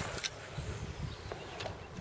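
Wind rumbling on the microphone over a kayak on choppy water, with two sharp clicks about a quarter of a second in and a few fainter ticks later.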